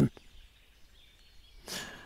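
Quiet outdoor background with a faint steady hiss during a pause in speech, then a short audible in-breath through the headset microphone near the end.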